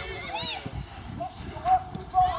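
Young football players shouting short calls across the pitch, their voices distant and unclear.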